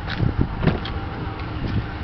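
Rear door of a pickup truck's crew cab being opened: the outside handle is pulled and the latch clicks a few times within the first second. Wind rumbles on the microphone underneath.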